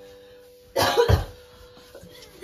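A young woman's hard burst of coughing about a second in, a few quick coughs close together, acted as the first sign of a pill overdose. A soft held note of background music runs underneath.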